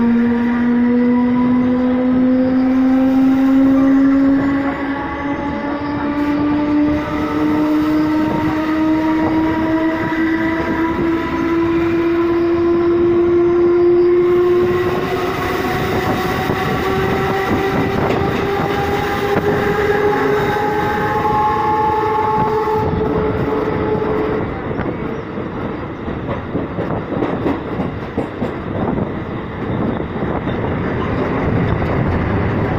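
Electric traction motors of a Mumbai suburban local train whining as it gathers speed: a stacked tone that rises slowly and steadily in pitch, then fades out near the end. Wheels on the rails and wind through the open doorway rumble underneath throughout.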